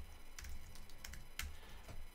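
Computer keyboard typing: a few faint, separate keystrokes as a short terminal command is entered.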